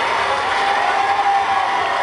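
Large concert crowd cheering and yelling: a steady dense din with single voices holding long shouts above it.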